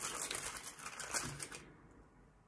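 Foil inner wrapper of a Toblerone bar crinkling and crackling as it is peeled back by hand, a quick run of small crackles that stops about one and a half seconds in.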